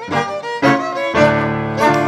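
Live folk dance band playing an English country dance tune: fiddle carrying the melody over piano accompaniment, with fuller held low notes coming in a little over a second in.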